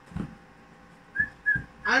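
Two short, high whistle-like chirps about a third of a second apart. A man's voice starts near the end.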